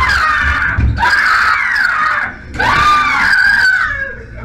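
A man screaming in fright: three long, high screams, one after another.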